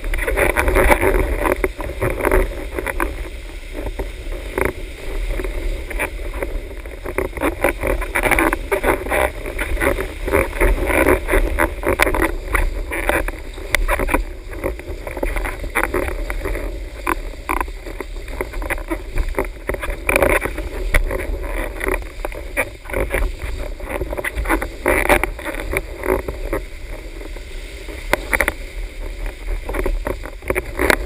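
Windsurf board riding over waves: steady rushing of water and spray under the board, with frequent short slaps from the chop and wind buffeting on a rig-mounted camera's microphone.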